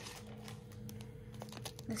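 Faint scattered clicks and taps as a plastic wax-melt clamshell in a clear plastic bag is picked up and handled with long fingernails.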